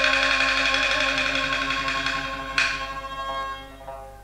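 Qinqiang opera accompaniment playing a long, bright held instrumental passage between sung lines. The instruments sound again about two and a half seconds in, then fade away near the end.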